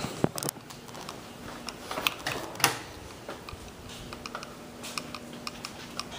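Handling noise from a phone camera being moved around: irregular clicks and taps, louder around two seconds in, over a faint steady hum.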